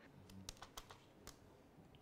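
A few faint, sharp clicks from a camera and flash being handled, scattered over near silence.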